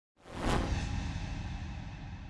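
Logo-reveal whoosh sound effect: a swoosh that swells up and peaks about half a second in, then a deep tail that slowly fades away.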